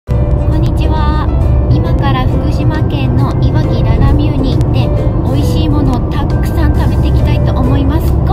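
A woman talking over background music, with a steady low car-cabin rumble underneath.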